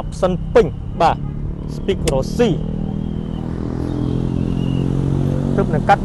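A vehicle engine running at a steady pitch, growing gradually louder through the second half.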